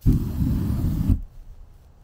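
Wood fire in a backyard fire pit flaring up with a loud, rumbling whoosh as fluid is sprayed from a can onto it. The whoosh starts suddenly, lasts about a second, then dies down to a faint hiss.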